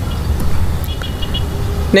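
A steady low rumble like a motor vehicle's, with faint short high tones about halfway through.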